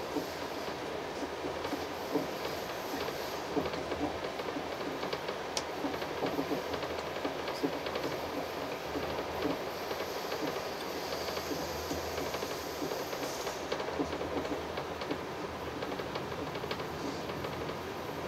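Running noise heard inside a passenger coach of a moving train: a steady rumble of the wheels on the rails, with frequent light clicks and knocks.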